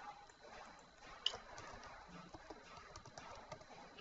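Faint, irregular clicks of typing on a computer keyboard, with one sharper click about a second in.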